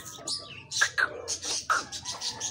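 Birds chirping, many short calls in quick succession, some overlapping.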